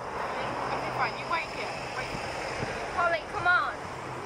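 Road traffic noise from a car passing on an open road, with short bits of people's voices over it.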